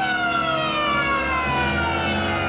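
Police car siren winding down, its wail falling steadily in pitch, with a low rumble underneath.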